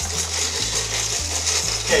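Hand-cranked Molino grain mill grinding hard white wheat, its turning grinding wheel rasping steadily against the stationary one, set tight for a finer flour.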